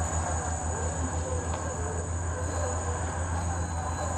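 T1H2 remote-controlled helicopter tug's drive running as it eases a helicopter onto its cradles: a steady low hum with a rapid even pulse, and a faint steady high-pitched tone above it.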